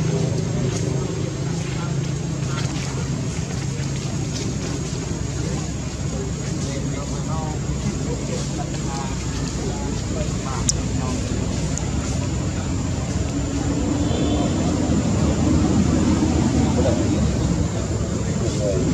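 Steady low engine-like rumble of background noise with faint voices, a few short faint chirps, and one sharp click about two-thirds of the way through.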